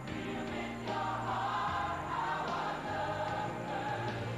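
A large ensemble of voices singing a chorus together in unison over instrumental backing with held low notes.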